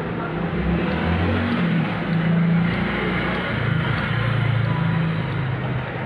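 A motor vehicle's engine running: a low, steady hum under a wash of noise, its pitch shifting slightly now and then.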